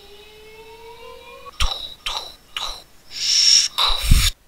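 Mouth-made sound effects (human beatboxing): a hummed tone slowly rising in pitch, then three sharp percussive hits, a hissing 'pssh' burst and a final deep thump.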